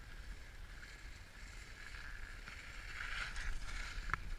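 Skis hissing and scraping over packed snow while skiing downhill, with wind rumbling on the microphone; the scraping swells about three seconds in.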